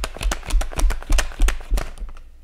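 Tarot cards being shuffled by hand: a rapid run of card slaps and clicks, about seven a second, with dull thumps from the deck, stopping near the end.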